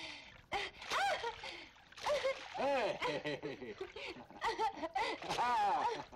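Human voices making high, gliding vocal sounds in short repeated bursts, with no words made out.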